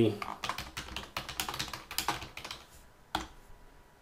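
Typing on a computer keyboard: a quick run of keystrokes for about three seconds, then one separate click shortly before the end.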